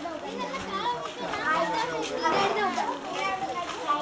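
A group of children shouting and chattering, many voices overlapping at once with no clear words.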